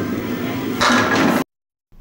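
Candlepin ball rolling down a wooden lane, then a louder clatter of pins being struck about a second in, knocking down five; the sound cuts off suddenly shortly after.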